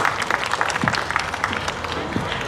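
Audience applauding at the end of a song, the clapping gradually thinning out.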